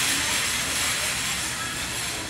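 Steady rushing background noise with no clear pitch or strokes, such as room or venue ambience.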